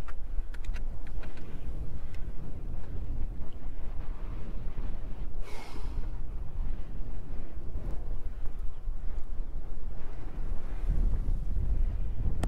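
Strong mountain wind buffeting the camera's microphone: a steady low rumble that swells and dips with the gusts. A few faint clicks just after the start and a short hiss about halfway through.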